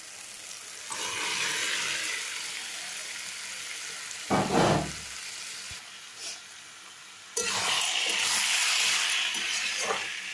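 Chicken frying in hot oil in a kadai as it is stirred with a metal spatula. The sizzle swells about a second in and jumps louder about seven seconds in, with a loud thump near the middle.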